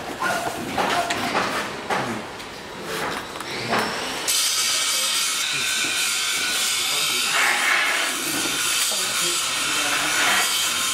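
Indistinct voices, then a loud, steady hiss starts abruptly about four seconds in and keeps going.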